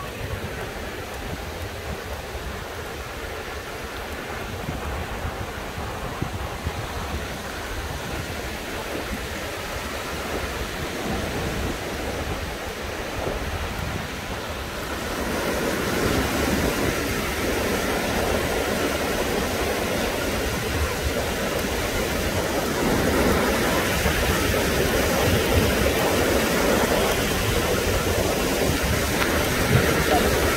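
Ocean surf washing onto a sandy beach, a steady rushing noise that grows louder about halfway through.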